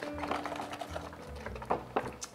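Quiet background music with held notes. Under it, light handling sounds from a plastic clamshell box of baby kale being shaken out over a steel pot, with two sharp knocks near the end.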